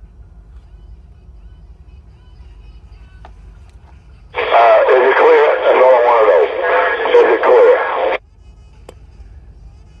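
A man's voice coming over a CB radio, thin and cut off above the upper mids, switching on abruptly about four seconds in and cutting off sharply about four seconds later. Before and after it, only a low steady hum.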